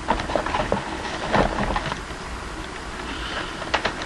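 Rummaging through a box of packaged toy cars: light rustling of cardboard and plastic blister packs with scattered small clicks, most of them in the first second and again just before the end.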